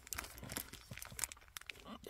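Faint, irregular crinkling of a Honda parts bag being handled in the hand.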